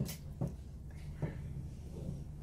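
A wooden spatula stirring thick chocolate pudding in a frying pan, giving a few faint scrapes and squishes over a low steady hum; the pudding has cooked enough.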